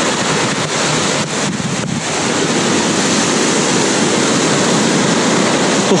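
Sea surf washing onto a sandy beach, mixed with wind buffeting the microphone: a steady, loud rush with no break.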